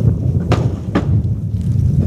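A gust of wind buffeting the microphone: a loud, low rumble with two short clicks, about half a second and a second in.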